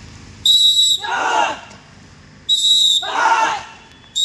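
Two short, shrill whistle blasts about two seconds apart, each answered at once by a group of trainees shouting together in unison, keeping the rhythm of an exercise drill.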